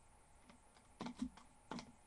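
A few keystrokes on a computer keyboard in two short clusters, the first about a second in and the second near the end.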